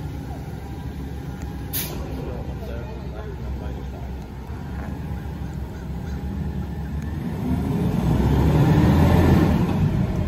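Rear-loader garbage truck's engine running low and steady, then getting louder as the truck pulls away, loudest near the end. A sharp click comes about two seconds in.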